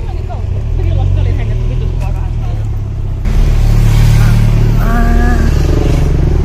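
Street ambience: a steady low rumble of traffic and handheld-microphone noise, with brief snatches of voices. About three seconds in, the noise jumps suddenly louder and fuller.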